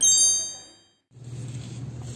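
A bright, high-pitched chime rings out at the start, several clear tones together, and fades away within about a second. After a brief silence a low, steady hum comes in.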